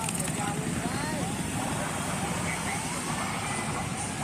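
Steady traffic noise in a slow-moving jam: car and motorcycle engines running close by, with road rumble.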